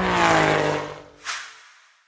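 Logo-animation sound effect of a car engine zooming past, its pitch falling as it fades away. A short whoosh comes a little over a second in.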